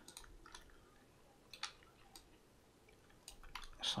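A few faint computer mouse clicks and scroll-wheel ticks, scattered with pauses between, over a low room hiss.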